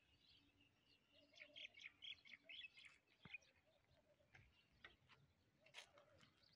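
Faint birds chirping in quick short calls, busiest from about one to three seconds in.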